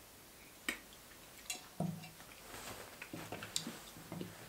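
Faint mouth sounds of a man tasting a sip of whisky: small wet clicks of the lips and tongue, a short low throat sound about two seconds in as he swallows, and a few light clicks as the glass is set down on a wooden cask.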